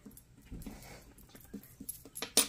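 Quiet handling of a coin on a laminated scratch-off card, with a faint thud about half a second in. A few light clicks come near the end as the coin is set down on the tabletop.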